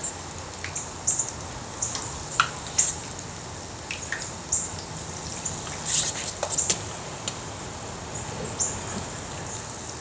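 Battered onion rings frying in a pan of oil heated to about 375 degrees: scattered crackles and pops over a low steady hiss.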